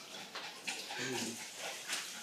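Faint sounds from a dog, with a short, low whine about a second in.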